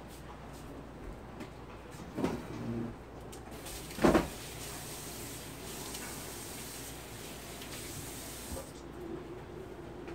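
Household kitchen sounds at a counter: a knock about two seconds in, a louder sharp clatter about four seconds in, then a steady hiss of about five seconds that cuts off suddenly.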